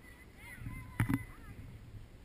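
Faint, distant voices of players and spectators on an open field, with two sharp knocks in quick succession about a second in.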